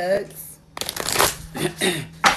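A deck of large reading cards shuffled by hand, a quick papery rustle of cards sliding that starts about three-quarters of a second in and keeps going.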